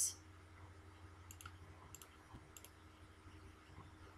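A few faint computer mouse clicks, in quick pairs, about a second and a half in, at two seconds and about two and a half seconds in, over a low steady hum.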